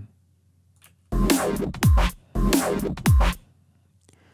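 Playback of an electronic track being arranged in a DAW: kick drums with pitch-dropping thumps under gritty neuro-style bass hits. It starts about a second in and stops abruptly near the end.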